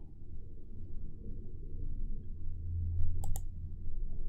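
A computer mouse clicking once, sharply, a little over three seconds in, over a low steady hum.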